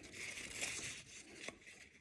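Faint rustling and crinkling of paper strips being handled as a strip is threaded through a paper loop and bent round into a ring, with a few light ticks.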